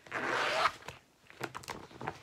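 A brief, loud rasping rustle as cross-stitch supplies are handled, lasting under a second, followed by a few small clicks.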